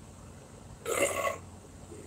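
A man's single loud burp, about half a second long, about a second in.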